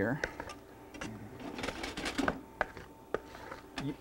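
Wooden spoon stirring a chunky potato salad in a plastic mixing bowl: scattered, irregular light clicks and knocks of the spoon against the bowl.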